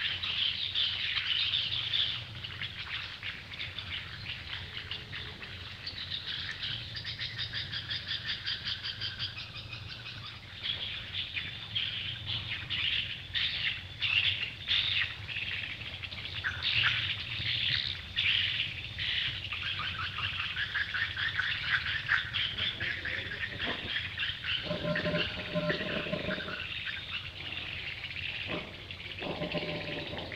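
Birds chirping and twittering throughout, in quick repeated notes. A short, lower-pitched call breaks in about five seconds before the end.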